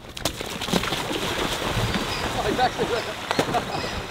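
Bare feet splashing through shallow floodwater at a run, then a skimboard skimming across the surface with a continuous wash of spray.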